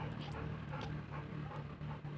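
Bullmastiff panting softly.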